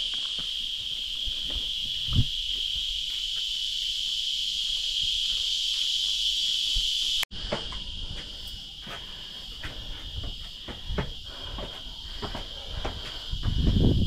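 A steady, high-pitched insect chorus, louder in the first half and fainter after a cut about seven seconds in. Footsteps on stone stairs knock irregularly under it in the second half, and there is a single thump about two seconds in.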